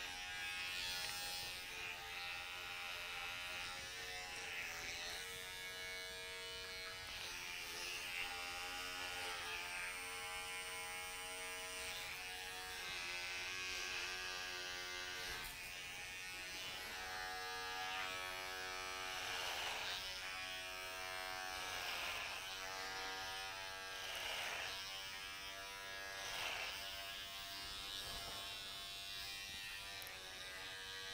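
Cordless electric hair clipper buzzing as it cuts hair. Its pitch shifts every few seconds, and in the last third the buzz swells about every two seconds as the clipper is worked through the hair.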